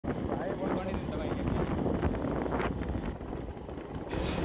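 Motorcycle running with wind on the microphone, a steady low rumble. A faint, muffled voice shows through it in the first half.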